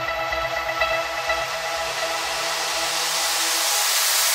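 Electronic dance track in a build-up: a hissing noise riser swells and brightens upward over held synth tones, while the low pulsing beat thins out and drops away near the end.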